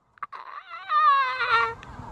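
A high-pitched, wavering vocal squeal that slides slowly down in pitch for about a second and a half, after a brief dropout at the start. It sounds like a held, squealing laugh.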